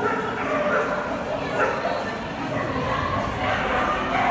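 A small dog barking as it runs an agility course, with human voices.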